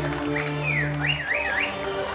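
Dance music playing, with a person in the audience whistling a run of high glides that fall and rise several times over about a second, starting about half a second in.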